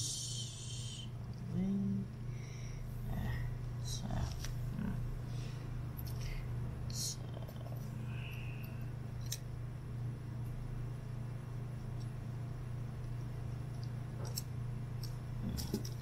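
Small handling sounds of tweezers working ribbon cables into a MiniDisc player's circuit board: scattered light clicks and rustles, over a steady low hum.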